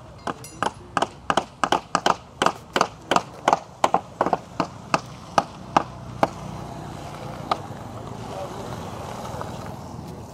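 Footsteps on a dirt road, about three a second, stopping about six seconds in. After that a steady rushing noise takes over.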